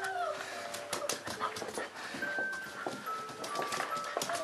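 Saint Bernard puppies playing, with thin high whimpers that slide and step downward in pitch, over scattered scuffles and small clicks.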